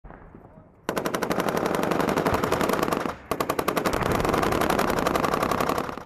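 Automatic machine-gun fire in two long, rapid, evenly spaced bursts, with a short break about three seconds in.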